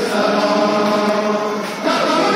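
Noha, a Shia lament, chanted by a crowd of male mourners on long held notes. The voices dip briefly near the end, then come in again more strongly.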